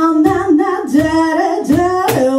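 Live blues band: a woman singing held, gliding notes into a microphone over electric bass and electric guitar, with a low beat thumping about twice a second.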